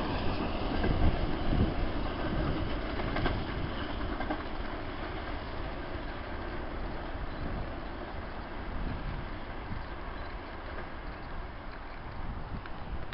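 A railtour train running away down the line, its rumble and wheel clatter on the rails fading steadily as it recedes.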